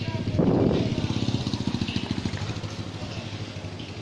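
A motor vehicle with a rapidly pulsing engine, like a motorcycle or scooter, passing close by. It is loudest about half a second in and fades gradually after that.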